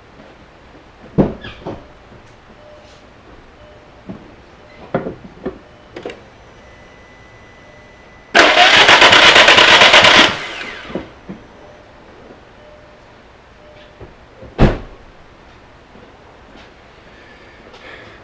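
Starter cranking the 2002 VW Jetta wagon's 1.8T turbo four-cylinder engine for about two seconds, in a fast even rhythm, without it catching: there is no ignition signal from the ECU, so the engine won't start. A short thump about a second in and another a few seconds after the cranking.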